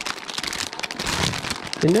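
Thin plastic bag of LEGO bricks crinkling as it is handled and pulled out of a cardboard box, a dense crackle.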